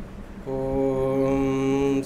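A man's voice chanting a long "Om" on one steady pitch, starting about half a second in, at the opening of a Sanskrit invocation chant.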